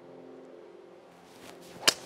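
A golf club swung on a tee shot: a short rising swish of the downswing, then one sharp click as the clubface strikes the ball near the end.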